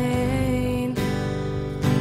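Live worship-band music: an acoustic guitar strummed over sustained band chords, with a fresh strum about a second in and another near the end.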